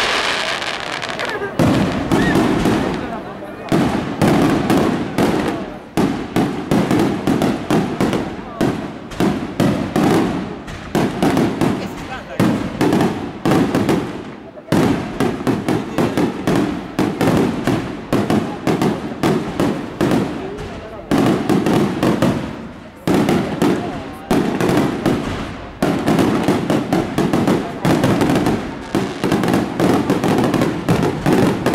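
Aerial fireworks display: a rapid, continuous barrage of shell bursts and reports, several bangs a second, with brief lulls about halfway through and again later.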